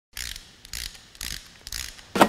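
Intro logo sound effect: four short mechanical bursts, about half a second apart.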